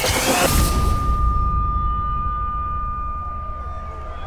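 Film-trailer sound design: a sudden burst of noise at the start, then a single high, steady ringing tone held over a low rumble, the kind of ear-ringing effect used after a blow.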